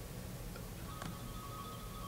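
Quiet room tone through a presentation sound system: a low steady hum with a faint high whine, and a couple of faint computer mouse clicks about a second apart.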